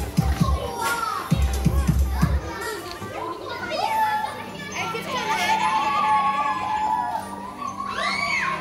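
Young children playing and calling out, with high squeals, over dance music with a strong bass beat that drops out about two and a half seconds in.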